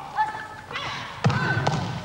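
Volleyballs struck hard during team practice, a few sharp hits with the loudest just past halfway, and players' high-pitched shouts between them.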